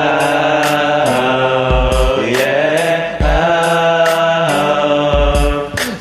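Wordless male vocalising in long held notes with slow glides in pitch between them, over a karaoke backing track with a steady beat of hi-hat ticks and kick drum.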